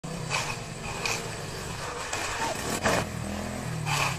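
Small motorcycle engine running at low, steady revs, with a few short bursts of noise over it.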